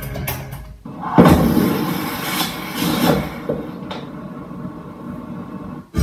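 Television audio heard through the set's speaker: drum-backed end-credits music stops just under a second in. A sudden loud cinematic hit follows and fades slowly over the next few seconds.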